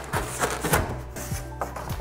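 Background music with a handful of short, sharp clicks and knocks from handling equipment.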